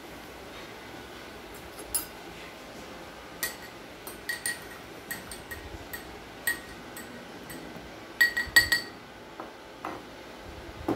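Metal spoon stirring soya sauce into water in a drinking glass, clinking against the glass sides again and again with a short ring after each clink. A quick run of louder clinks comes near the end.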